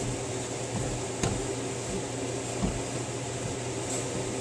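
A silicone spatula stirring soft biscuit dough in a ceramic mixing bowl, with a couple of faint knocks against the bowl, over a steady low background hum.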